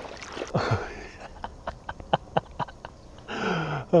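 Legs wading through thigh-deep marsh water, sloshing and splashing in a string of short irregular swishes. A breathy laugh comes at the very end.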